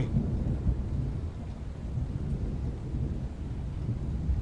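A low, steady rumble with no distinct events.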